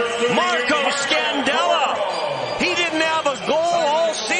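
A male broadcast commentator's voice talking.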